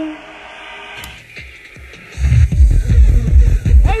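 Hardcore techno DJ mix in a quiet breakdown, then a heavy, fast kick drum drops back in about two seconds in and runs loud.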